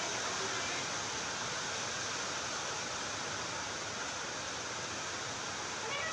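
Steady, even hiss of background noise with no distinct sounds standing out of it.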